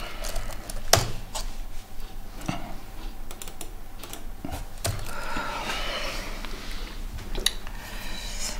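Scattered, irregular clicks of a laptop's keys and mouse as web pages are clicked through, a dozen or so separate clicks rather than steady typing.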